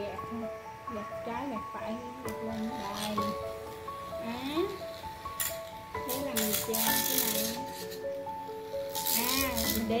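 Background music with a voice, and from about halfway in, bursts of gritty scraping noise from a small handheld rotary sander's sanding disc working over a dry wooden branch.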